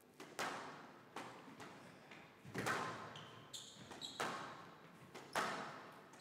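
A squash rally: the ball is struck by rackets and hits the court walls in about five sharp cracks spaced a second or so apart, each echoing in the hall. A few short high squeaks, like shoes on the court floor, come in between.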